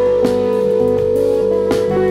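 A live band playing an instrumental passage, heard from the soundboard feed: electric guitar, bass, keyboards and drum kit. Long held notes run over the top with a few drum hits beneath.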